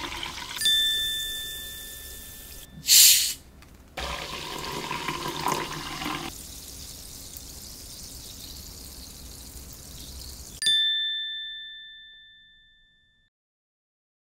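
Drink-advert sound design: a bright chime rings, then a carbonated drink pours and fizzes into a glass, with a short loud hiss about three seconds in. A second chime rings near the end and fades out.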